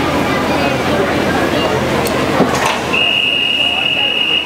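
Crowd chatter echoing around a swimming pool, then about three seconds in an electronic starting signal sounds: one steady high beep held for over a second to start the backstroke leg of a medley relay.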